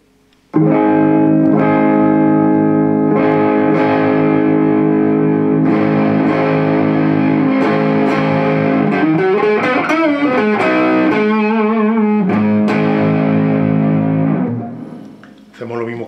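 Harley Benton HB35 Plus semi-hollow electric guitar on its neck pickup, played through a Bugera V22 valve combo amp. Strummed chords are let ring, with wavering vibrato and bent notes in the middle. The sound starts suddenly about half a second in and dies away near the end.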